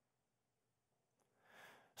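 Near silence: a pause in a speaker's talk, with a faint intake of breath about a second and a half in.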